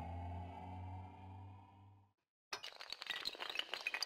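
Intro sound effects: a low synthesised drone with a slowly rising tone fades out over the first two seconds. After a brief silence, a dense clatter of tinkling, glass-shattering sounds begins about two and a half seconds in.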